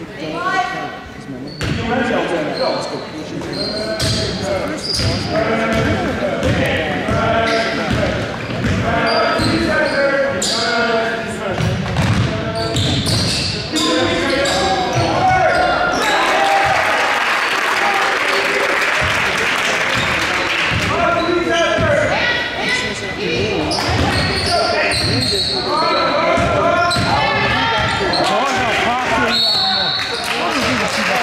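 Basketball game in a school gym: the ball bouncing on the hardwood floor amid the shouts and chatter of players and spectators, all echoing in the hall. About halfway through, the crowd noise swells for a few seconds.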